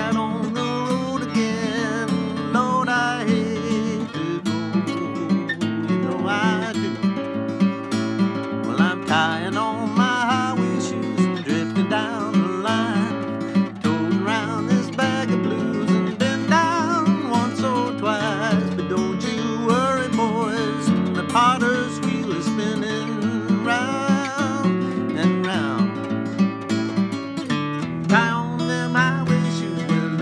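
Steel-string acoustic guitar playing a blues tune, a continuous run of strummed and picked notes.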